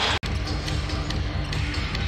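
A basketball bouncing on a hardwood arena court, with arena music playing behind it. The sound cuts out for an instant just after the start.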